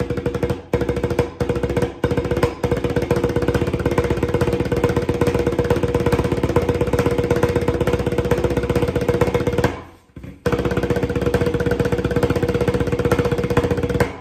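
Tarola (banda snare drum) played with wooden sticks in the seven-stroke roll rudiment: fast alternating single strokes, in short separate groups at first, then run together into a continuous roll. The roll stops briefly about ten seconds in and starts again.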